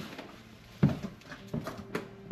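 Footsteps thudding on wooden attic stairs, about four heavy steps in two seconds.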